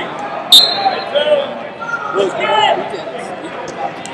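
Freestyle wrestlers hand-fighting on a mat in a large, echoing hall: a single sharp slap about half a second in stands out over scattered voices and shouts in the background.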